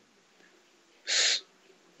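A man's single short in-breath, heard as a breathy hiss about a second in, with silence either side.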